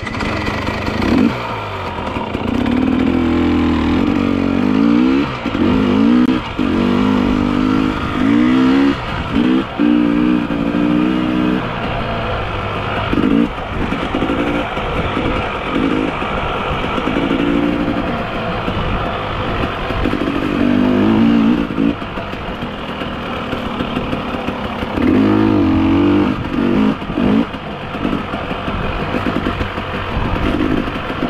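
Off-road motorcycle engine revving up and down as it rides a trail, the pitch rising and dropping again and again with gear changes and throttle, over a steady rumble and hiss.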